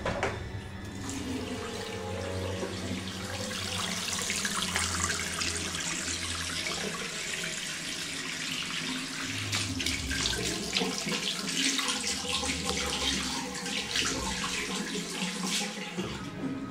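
Tap water running steadily into a ceramic washbasin. From about ten seconds in it splashes irregularly as hands move under the stream.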